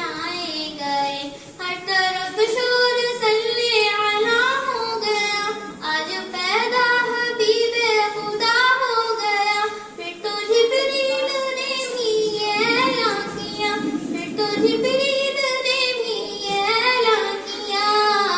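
A girl singing a naat, an Urdu devotional song in praise of the Prophet, into a handheld microphone. She sings in melodic phrases with long, wavering held notes.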